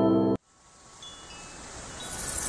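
Opening music that stops abruptly about a third of a second in, then a moment of silence. After that, a faint sound effect swells slowly, with a brief high tone about a second in.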